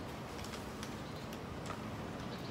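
Steady low outdoor background noise with faint, irregular ticking clicks scattered through it.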